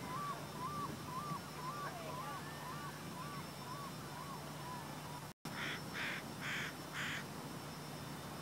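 A bird calling a series of short whistled notes, about two a second, that fade out. After a brief dropout, four short harsh calls follow in quick succession.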